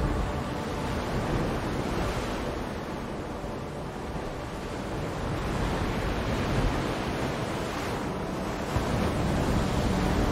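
Ocean waves washing in a steady surf that swells and eases in slow surges, with no music.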